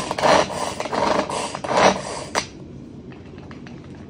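Pull-cord manual food chopper chopping red onion: the cord is pulled about five times in quick succession, each pull a short burst of the spinning blades cutting through the onion in the plastic bowl. The pulls stop about two and a half seconds in.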